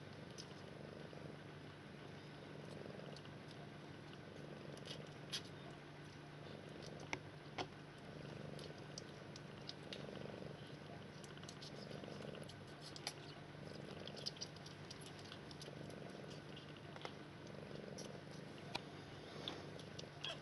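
Sphynx mother cat purring steadily as her kittens nurse, the purr swelling and easing about once a second with her breathing. Small scattered clicks and ticks sound over it.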